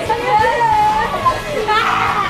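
Boys shouting and shrieking in high-pitched voices during excited horseplay, with no clear words.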